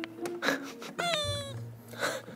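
A cat meow sound effect: one call about a second in that falls in pitch, over light background music, with a couple of short pops before it.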